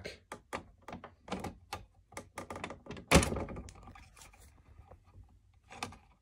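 Fingers working plastic parts inside a Keurig's top assembly, trying to slide back the tight clamp on the rubber water tube: a run of small clicks and taps, with one louder sharp thunk about three seconds in.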